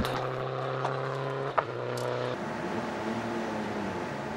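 Steady vehicle engine hum with no revving; a little over halfway through it gives way to a different, higher steady hum.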